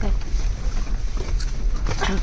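Low, steady rumble inside a Jeep Wrangler's cabin as it crawls down a rough dirt forest track, with two sharp knocks about halfway through and near the end.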